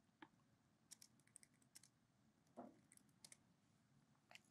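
Faint keystrokes on a computer keyboard: a quick run of clicks about a second in, then two more taps near the end, typing the last words of a chat prompt and sending it.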